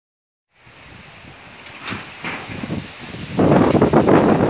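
Wind buffeting and handling noise on a phone's microphone outdoors, with a sharp click about two seconds in, growing much louder and rougher near the end as the phone is moved.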